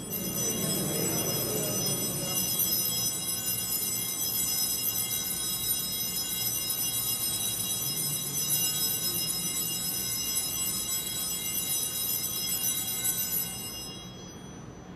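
Altar bells at the elevation of the host during the consecration: a sustained ring of many steady high tones that stops abruptly near the end.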